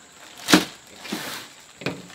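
A sharp knock on a plastic folding table, then a short rasp of a knife slicing open a plastic mailer bag, and a second sharp knock about a second and a half after the first.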